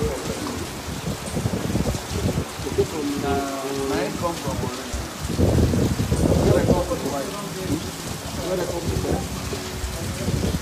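Heavy rain falling steadily on roofs and concrete, growing louder for a stretch a little past the middle.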